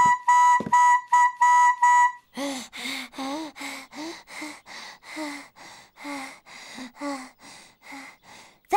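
Toy trumpet blown in several short, loud toots on one note. Then, a little over two seconds in, a cartoon donkey's voice makes a long run of quick, breathy sighs, about two or three a second.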